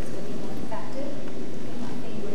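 Indistinct speech from a speaker far from the microphone, in a large room, under a steady hiss.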